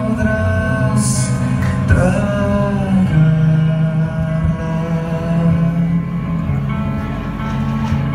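A live rock trio playing a slow, dreamy post-rock/shoegaze piece. The electric guitar holds long sustained notes over bass guitar and a drum kit, with a cymbal crash about a second in.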